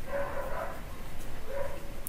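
A dog barking faintly in the background, twice, about a second and a half apart.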